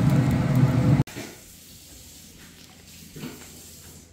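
Steady whirring hum of a pellet smoker running, which cuts off abruptly about a second in. Quiet indoor room tone follows, with one faint bump.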